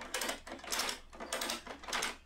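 Ratchet strap tensioner being cranked by hand, its pawl clicking in four quick rattling strokes about twice a second. Each stroke tightens the strap that draws the roller of a DIY etching press across the print.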